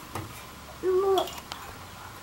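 A toddler's single short "ooh"-like vocalization, about a second in, held on one pitch with a slight lift at the end.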